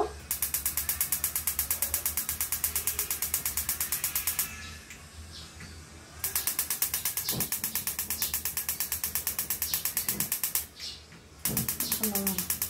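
Gas stove's spark igniter clicking rapidly and evenly, about six clicks a second, in three long runs with short pauses between, as the knob is held to light a burner.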